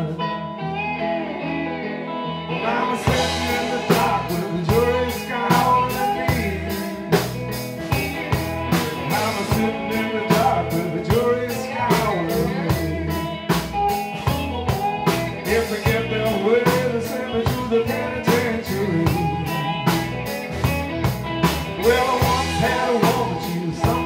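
Live blues band playing an instrumental break after a verse: electric guitars, bass and drum kit. The drums come in fully about three seconds in with a steady cymbal beat, under bending lead lines.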